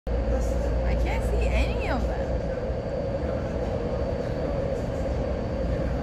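Metro train running, heard from inside the car: a steady low rumble with a steady hum over it. A brief voice slides up and down about a second in.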